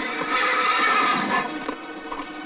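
A horse neighs loudly for about a second, over background music.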